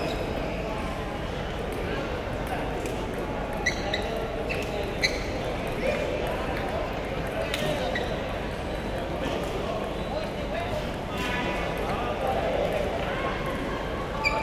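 Table tennis hall ambience: a steady murmur of voices with scattered sharp clicks of plastic table tennis balls on tables and paddles, a few louder ones around four, five and seven and a half seconds in.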